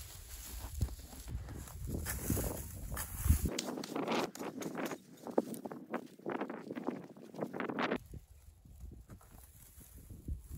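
Small hand pick chopping and scraping into dry clay soil: a run of irregular knocks and scrapes with crumbling dirt, thinning out near the end.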